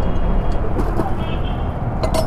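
Steady low rumble of road traffic, with the plastic wrapping of a new motorcycle tyre crinkling and crackling as it is handled, about half a second to a second in.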